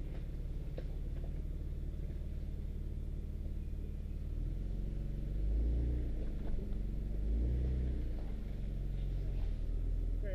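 Nissan Xterra's engine running at low revs as it crawls over rocks on a muddy trail, with two brief, louder pushes of throttle about five and a half and seven and a half seconds in.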